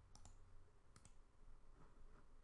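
Near silence with faint computer mouse clicks: a quick pair just after the start and one more about a second in.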